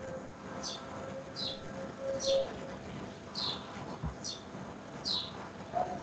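A bird chirping repeatedly: short, high notes that fall in pitch, about one a second.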